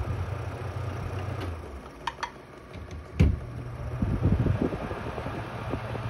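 Honeywell desk fan running with a low hum that dies away as it is unplugged, then two small clicks and a thump as its plug goes into a wall outlet. The fan starts back up on wall power and runs faster and noisier: "more air, more noise, faster fan."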